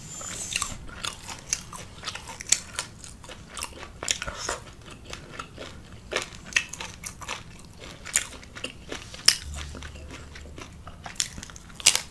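A person biting into and chewing a carne asada taco on corn tortillas, with many short, sharp, irregular chewing clicks.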